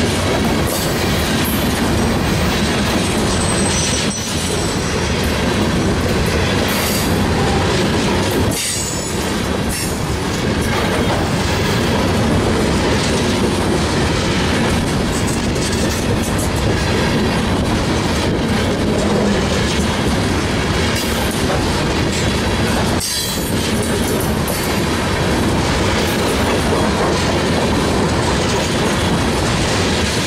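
Bessemer and Lake Erie steel ore hopper cars rolling steadily past at close range: a continuous loud rumble and clatter of wheels on the rails. A faint high wheel squeal comes in briefly a few seconds in.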